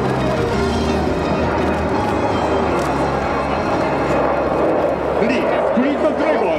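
Airshow loudspeaker music and indistinct commentary over a steady, loud rushing roar.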